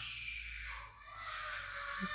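Faint steady background hiss with a low hum: room tone and recording noise, dipping briefly about a second in.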